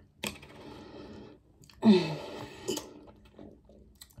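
Closed-mouth chewing of a chocolate-covered strawberry, with wet mouth clicks and a short falling 'mm' about two seconds in.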